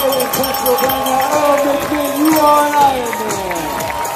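Crowd of spectators shouting and cheering at a race finish line, several voices overlapping, with one long drawn-out call that falls in pitch about three seconds in.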